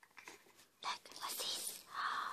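Soft breathy whispering in short bursts, starting about a second in, after a few faint clicks.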